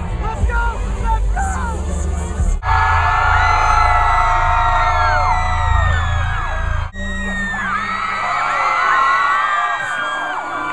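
Live band music with singing for about the first two and a half seconds, then a concert crowd screaming and cheering, many high shrieks rising and falling over one another. The sound cuts off abruptly twice, once between the music and the cheering and once more partway through the cheering.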